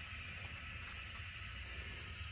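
Low, steady room noise with a few faint clicks and crinkles of a clear plastic blister tray as an N scale model passenger car is pried out of it.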